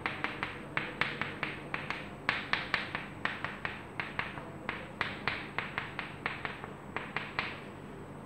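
Chalk tapping against a chalkboard in short strokes as letters and bond lines are written: a string of sharp, irregular taps, several a second, that stop shortly before the end.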